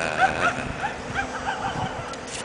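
An animal's rapid series of short, high calls, about ten in two seconds, each rising and falling in pitch.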